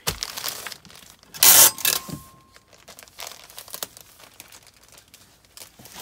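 Plastic poly mailer crinkling and rustling as it is handled, with one loud, short rip about one and a half seconds in.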